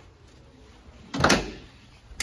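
A door being opened: one loud, short noise a little over a second in, lasting under half a second.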